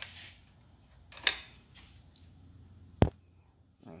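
Quiet handling noises as the camera is moved: a brief rustle about a second in and a single sharp click about three seconds in, over a low steady hum.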